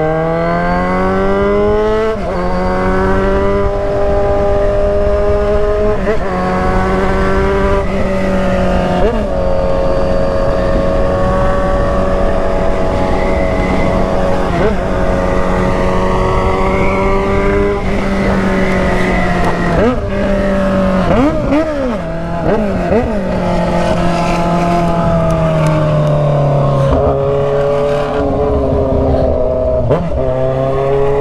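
Motorcycle engine heard from the rider's seat while riding: it pulls up in pitch through the first two seconds, shifts, then holds a steady cruising note with a few brief shifts. A cluster of quick rev blips comes about 21 to 23 seconds in, and the engine settles lower as the bike slows near the end.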